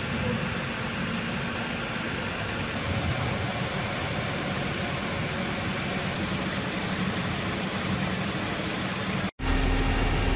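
Fire engine running, a steady low engine hum under a broad even noise. It drops out abruptly for an instant near the end, then comes back as a steadier hum.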